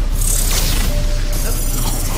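Soundtrack of a parody film sketch: low rumbling music, with a hissing sound effect that starts about a third of a second in and lasts about a second.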